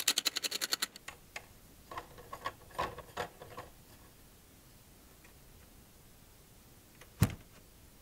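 Threaded rod being screwed by hand into the mount bracket of a Minn Kota Ultrex trolling motor, giving a rapid run of light clicks in the first second and a few scattered clicks over the next couple of seconds. A single knock follows near the end.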